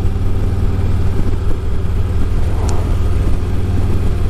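2017 Harley-Davidson Ultra Classic's Milwaukee-Eight 107 V-twin running steadily at cruising speed, a constant low rumble with wind and road noise over it.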